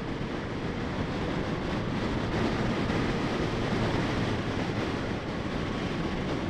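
Steady rush of wind and road noise with the Yamaha FZ-09's inline-three engine running underneath, as the bike, which has no windscreen, gathers speed at highway pace.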